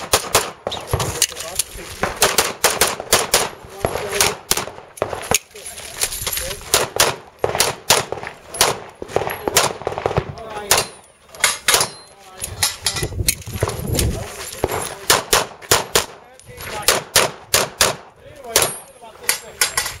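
Semi-automatic pistol fired rapidly in quick pairs and longer strings of shots, dozens in all, with brief lulls between strings.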